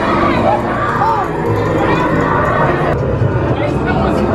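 Loud mix of people shouting and screaming over a haunted-house maze's music and sound effects.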